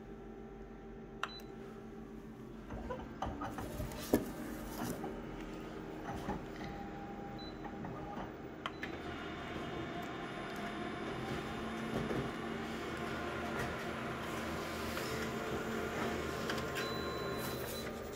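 Colour office photocopier running an enlarged copy job: a couple of sharp clicks about one and four seconds in, then a steady mechanical whirr that grows louder from about nine seconds in as it prints.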